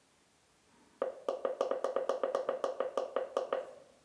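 Keypad arrow key on a Pettersson D500X bat detector pressed quickly again and again: about a dozen short pitched clicks, about five a second, starting about a second in and stopping shortly before the end. Each press steps the relative timer's start or stop time.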